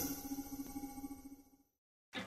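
Electronic sound design of a logo intro sting: the tail of a shimmering swell, with a low pulsing hum and a few held tones that fade away, going silent about one and a half seconds in.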